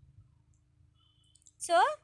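A quiet room with a few faint clicks, then a voice says a single word near the end.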